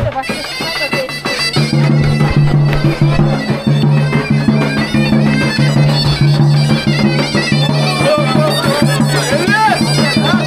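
Tulum, the Black Sea bagpipe, playing a fast melody over a steady low drone, with crowd chatter underneath. The drone comes in strongly about a second and a half in.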